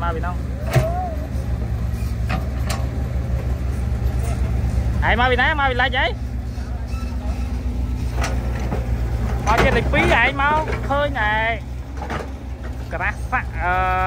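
Diesel engine of a CAT mini excavator running steadily while it digs mud, with a sharp knock about a second in.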